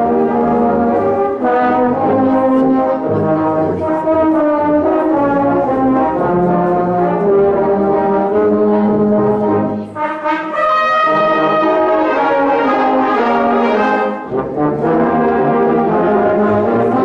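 Brass band playing a piece in held chords. There is a short break about ten seconds in before the next phrase begins, brighter and higher.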